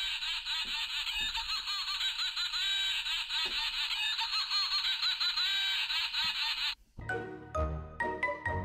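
A high-pitched, thin, laughter-like chattering sound effect with many quick warbling pitches. It stops sharply near the end, and a short tinkling music jingle starts.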